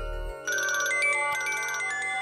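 Mobile phone ringtone playing a quick, bright electronic melody of short repeated notes, starting about half a second in, just after a chiming music cue cuts off.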